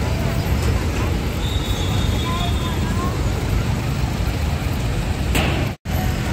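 Steady road traffic noise from a busy city street, a continuous rumble of engines and tyres with faint voices mixed in. It breaks off abruptly near the end.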